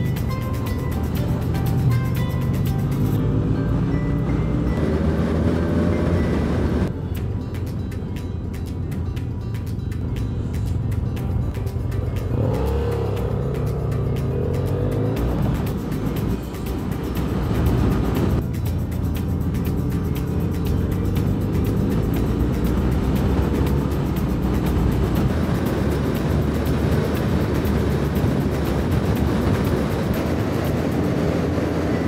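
Motorcycle engines pulling and accelerating on the road, the pitch rising repeatedly through the gears, with wind and road noise, mixed with background music. The sound changes abruptly about 7 s in and again about 18 s in.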